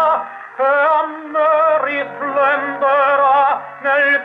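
A male tenor singing a slow Italian song with wide vibrato over a sustained accompaniment, played from a 1930 HMV 78 rpm record on an EMG Xb oversize horn gramophone with a thorn needle. The sound is narrow and has little treble. The voice drops away briefly just after the start and again shortly before the end, between phrases.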